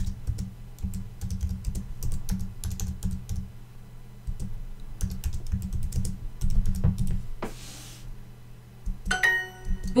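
Computer keyboard typing: a quick run of key clicks as a sentence is typed, stopping about seven seconds in. Near the end a short chime of bright tones sounds as the app moves on to the next exercise.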